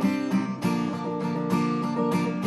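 Cutaway acoustic guitar played fingerstyle, a steady run of plucked notes that ring on over one another.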